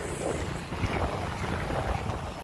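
Wind buffeting a phone microphone on a moving two-wheeler, over a low, uneven rumble of the ride and the surrounding traffic.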